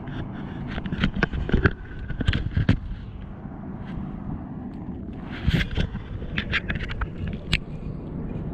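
Handling noise: irregular clicks and knocks as the camera is moved around in a small fibreglass boat, in two clusters with a lull between, over a steady background of wind and water.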